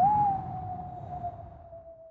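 A gust of wind: a single whistling tone that rises briefly and then slowly sinks over a rushing noise, loudest at the start and fading away.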